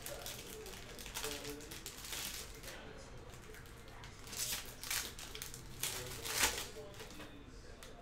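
Foil trading-card pack wrapper being crinkled and torn open by hand, in a few sharp crackly rustles. The loudest come about halfway through and just after six seconds in.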